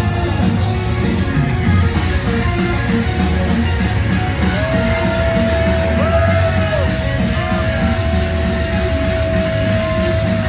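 Heavy metal band playing live, recorded from within the audience: dense drums and distorted guitars, with one long high note held from about halfway through.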